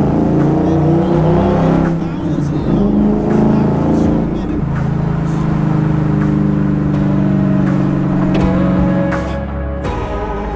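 Ford 5.0L Coyote V8 of a Factory Five Type 65 Daytona Coupe, breathing through side exhausts, running on the road. The revs rise and fall through the first half, then the engine holds a steady note for several seconds.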